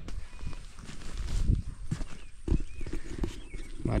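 Footsteps of a person walking, a few dull steps about a second apart, picked up by a handheld camera's microphone.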